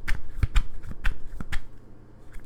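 A tarot deck being shuffled by hand: a quick run of sharp card slaps that stops about one and a half seconds in.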